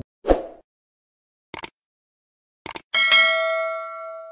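Subscribe-button animation sound effects: a short pop, then mouse clicks about a second and a half in and again near three seconds, followed by a notification-bell ding that rings out and fades over more than a second.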